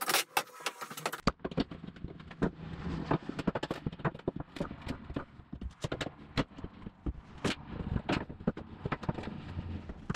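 Old plank subfloor being pried up with a steel pry bar: irregular sharp cracks, knocks and scrapes as the bar bites under the boards and the boards and nails are levered loose.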